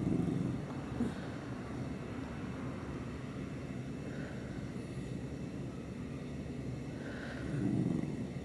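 A Pembroke Welsh corgi grumbling in low throaty rumbles, loudest at the start and again just before the end.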